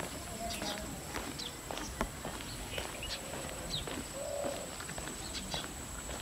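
A dove cooing softly, one call near the start and another about four seconds in, over a steady thin high-pitched whine and scattered light ticks.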